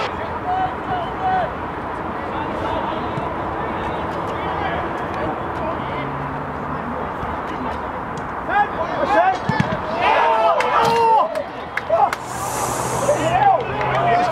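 Players' shouts on an outdoor football pitch over steady background noise; the calling grows busier in the last five or six seconds as an attack reaches the goal, with a dull thump about nine and a half seconds in.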